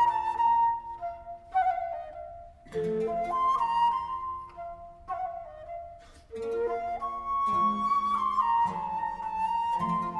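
Baroque wooden transverse flute (traverso) playing a slow melodic line in phrases separated by short pauses, over a lower accompaniment; no voice is singing yet.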